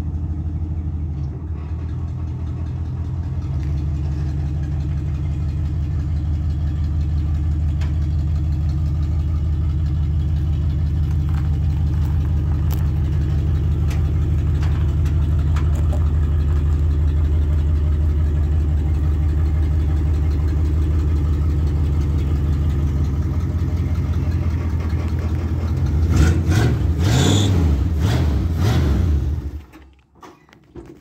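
Vintage Ford pickup's engine running at a steady idle, then revved a few times near the end before it is switched off and cuts out suddenly.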